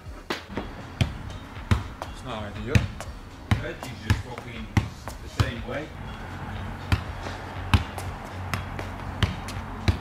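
Basketball bouncing repeatedly on a paved stone patio, about one bounce every 0.7 seconds.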